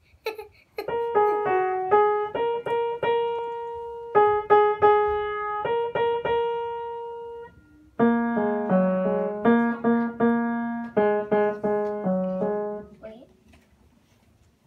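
Upright piano played slowly, one note at a time: a simple beginner's tune in two phrases with a short pause between, the second phrase adding lower notes beneath the melody. The playing stops about a second before the end.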